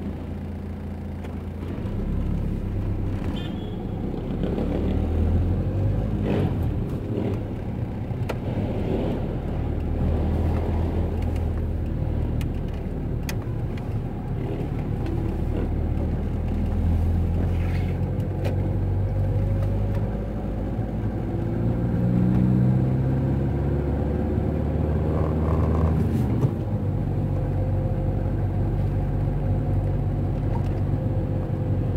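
Car engine and road rumble heard from inside a moving car in city traffic. The engine note climbs steadily as the car accelerates, then breaks off near the end.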